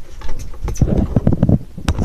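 Handling noise on the phone's microphone: a run of irregular knocks and rubbing as the recording phone is grabbed and covered.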